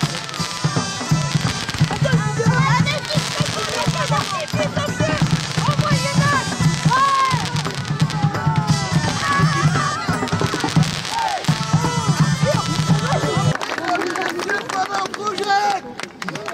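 Fireworks crackling and popping, mixed with crowd voices and music; the low music stops about two and a half seconds before the end.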